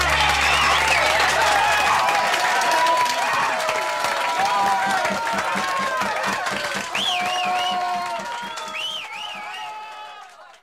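A live band's final chord rings out and stops about two seconds in. A crowd applauds and cheers, with shouts and whistles, and the noise fades out near the end.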